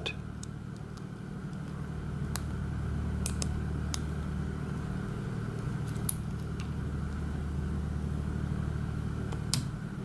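A handful of faint, scattered metallic ticks from a pick and tension wrench working the security pins of an IFAM Uno dimple-key shutter padlock. Under them runs a steady low hum from a running generator.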